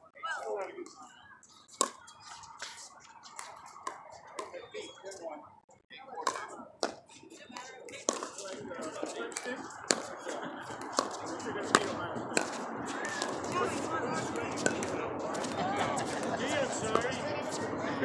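Sharp, irregular pops of pickleball paddles hitting the hollow plastic ball during play. Behind them, several people chat, and the chatter grows fuller in the second half.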